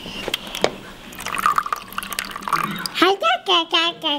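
A couple of clicks, then water from a water-cooler tap running into a foam cup for about a second and a half. A small child's high voice follows near the end.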